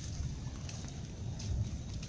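Light rain falling on wet ground and leaves: a steady, faint hiss over a low rumble.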